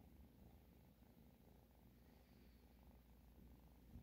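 Tabby kitten purring faintly and steadily, close to the microphone.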